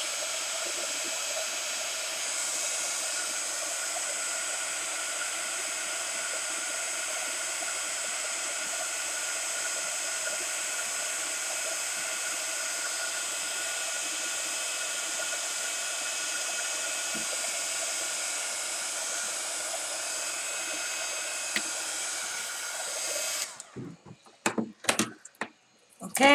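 Handheld electric hot-air blower running steadily, drying the freshly applied paint and gesso to seal the layer, then switched off near the end, followed by a few faint knocks.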